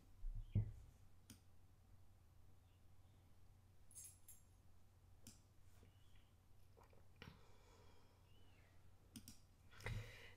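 Near silence with a few faint, scattered computer mouse clicks. A couple of soft low thumps come about half a second in.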